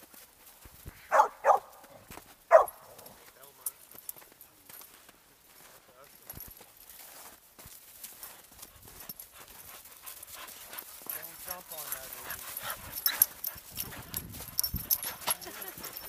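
A dog barks three times in quick succession a little over a second in. After that come the faint, scattered thuds and crunches of dogs running through snow, growing busier and louder near the end as the dogs come close.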